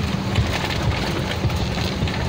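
A truck driving on a rough dirt road, heard from inside the cab: a steady low engine and road rumble with irregular knocks and rattles from the bumpy surface.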